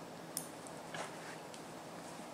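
Faint room tone with two light clicks, about a third of a second in and a fainter one about a second in, from small fly-tying scissors being handled just after snipping off the excess Mylar tubing.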